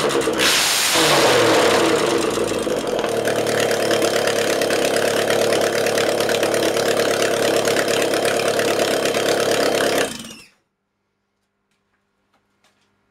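Ford Pinto 2-litre OHC inline-four engine running. It is revved briefly in the first second or so, then idles steadily, and cuts out suddenly about ten seconds in when switched off.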